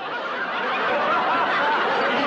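A studio audience laughing, many voices together. The laugh swells over the first half-second and then holds steady and loud.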